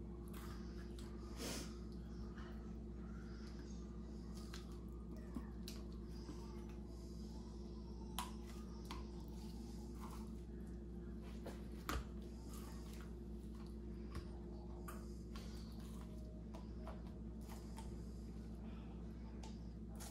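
Faint handling sounds of a marinade injector being worked into a raw turkey: a few scattered soft clicks and squishes over a steady low room hum.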